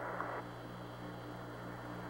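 Steady low hum with an even hiss from the Apollo 11 air-to-ground radio link, an open channel with no one talking.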